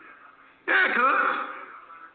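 A person clearing their throat: one short, sudden vocal burst starting a little over half a second in, lasting under a second before fading.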